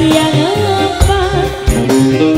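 Live tarling dangdut band music: a wavering melodic line over electric guitars, keyboard and a steady drum beat.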